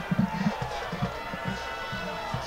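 Stadium ambience at a high school football game: low thumps several times a second over distant crowd voices, with faint music in the background.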